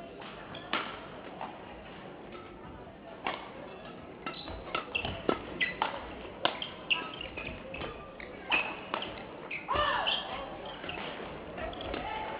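Badminton rally: rackets strike a shuttlecock back and forth in quick, irregular sharp hits, with short high squeaks of court shoes on the floor between them.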